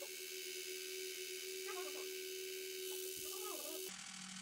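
Bellcida EMS Face Line facial device running in vibration mode, a steady buzz held on one tone. It stops just before the end.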